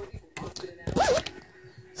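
A zipper being pulled in short rasps, with a brief voiced swoop in the middle.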